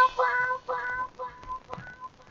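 Electronic dance music break: the drums drop out and a single synthesizer note repeats a couple of times a second, fading away like an echo.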